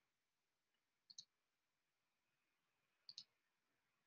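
Near silence broken by two faint double clicks of a computer mouse, about two seconds apart.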